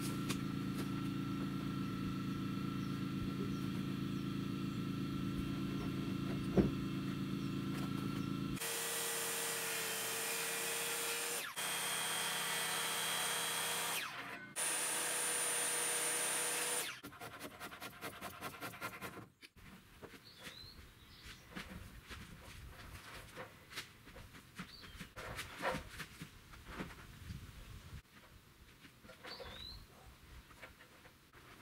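Corded circular saw running and cutting through two-by-six lumber, loud and steady, with its sound changing character partway through and two brief breaks; it stops about 17 seconds in, leaving a much quieter background with a few faint chirps.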